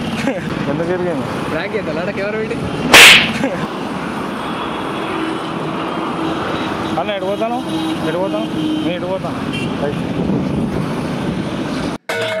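Street traffic noise under people talking, with a short, sharp, loud burst of noise about three seconds in.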